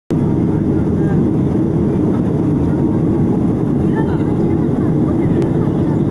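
Steady, low cabin noise of a passenger plane in flight, the even rush of engines and airflow heard from inside the cabin, with faint voices in the background.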